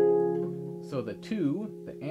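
Harp strings ringing on and fading after a few plucked notes. About a second in, a man's voice comes in softly, sliding up and down in pitch over the still-sounding strings.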